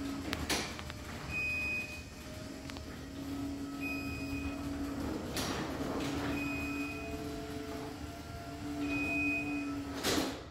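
Chamberlain C2212 garage door opener running on its battery backup, driving the door closed with a steady motor hum. A short high beep repeats about every two and a half seconds, the opener's signal that it is running on battery power. There are a couple of clunks along the way, and a loud thud at the very end as the door reaches the floor and the motor stops.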